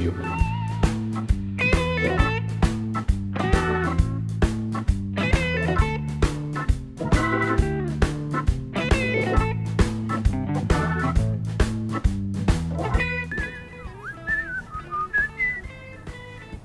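Background music with a steady beat over a held bass line. About three seconds before the end it drops much quieter to a single wavering melody line.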